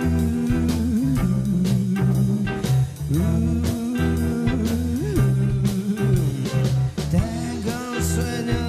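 Rockabilly band playing live: electric guitar, electric bass and drum kit in an instrumental intro with a steady driving beat.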